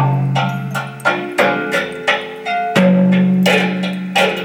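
An improvised tune on a homemade sanza (thumb piano): metal tines plucked a couple of times a second, each note ringing and dying away over low held tones.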